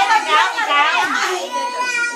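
Several small children's voices talking and calling out at once.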